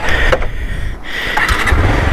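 Motorcycle engine starting and running at a low idle, the engine rumble growing stronger from about halfway through.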